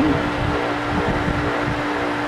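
A steady mechanical hum with one constant tone over a background of even noise, the kind of sound a fan or pump motor makes while running.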